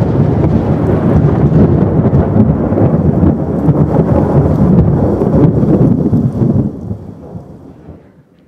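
Thunder sound effect: a loud crash of rolling thunder that starts suddenly, rumbles for about seven seconds and then fades away near the end.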